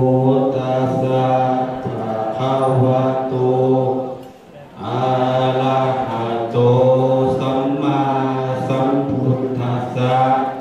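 Group Buddhist chanting in a steady, nearly level monotone: two long phrases with a short pause for breath about four and a half seconds in.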